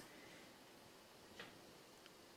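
Near silence: quiet room tone with a single faint tick about one and a half seconds in.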